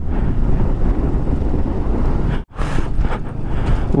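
Strong wind buffeting the microphone of a moving motorcycle, with the bike's engine and road noise underneath. The sound drops out abruptly for an instant about halfway through.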